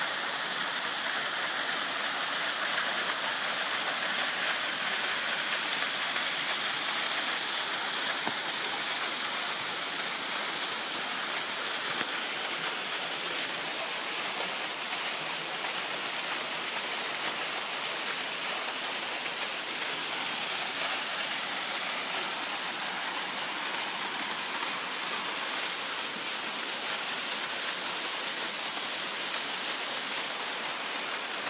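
Steady rush of falling water from a small waterfall spilling down a rock face, easing off slightly in the second half.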